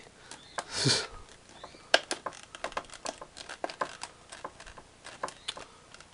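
Stiff clear plastic blister packaging being worked open by hand, crackling and clicking in a string of short, sharp clicks. A short breathy sound comes about a second in.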